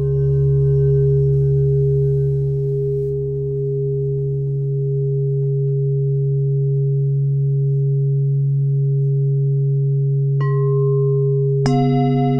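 Ambient meditation music: a low steady drone with long held ringing tones above it. A new bell-like tone is struck about ten seconds in, and another, richer one just before the end.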